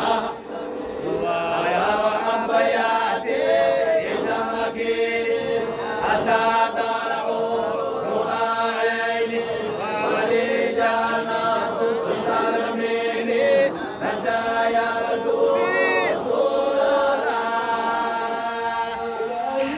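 A group of men chanting a Sufi Qadiriya dhikr together in unison, in repeated phrases about every two seconds over a steady held note.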